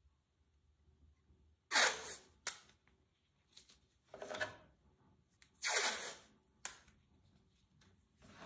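Green painter's tape pulled off its roll in three half-second rips, with short snaps between them as strips are torn and stuck down.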